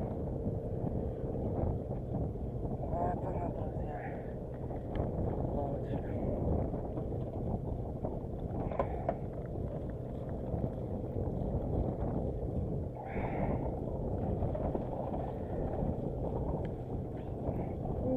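Steady low rumble with a constant hum from a boat on open water, with wind on the microphone.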